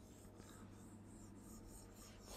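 Faint scratching of a pen stroking across the glass of an interactive touchscreen whiteboard as a loop is drawn, over a low steady hum.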